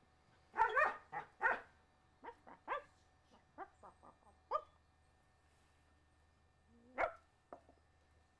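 Standard schnauzer barking: a run of short barks in the first half, a pause, then one more loud bark about seven seconds in.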